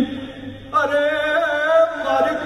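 A man's voice singing through a microphone and hall PA, in slow, held, chant-like lines: one long note ends at the start, and after a short break a new held, wavering phrase begins under a second in.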